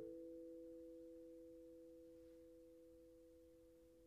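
Vibraphone chord left ringing with the pedal held: two steady, pure tones slowly fading away, faint by the end.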